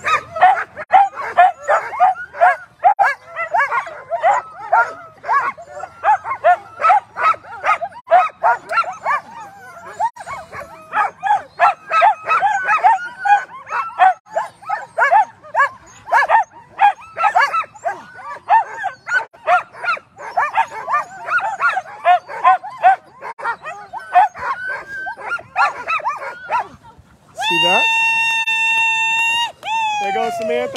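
A team of Alaskan husky sled dogs barking, yelping and yipping almost without pause, harnessed and eager to run as they wait to be released at a race start. Near the end, a single steady high tone sounds for about two and a half seconds over the dogs.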